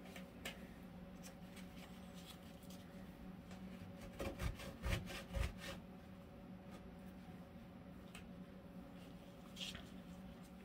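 Faint rubbing and a cluster of soft clicks about four to six seconds in, as a paper towel wipes paint off N scale rail heads, over a low steady hum.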